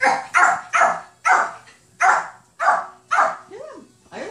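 A Yorkshire terrier puppy barking: about seven short, sharp, high yaps in quick succession, with brief gaps between them.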